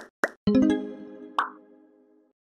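Channel logo intro sting: two quick cartoon pops, then a chime-like chord that rings out and slowly fades, with one more pop partway through.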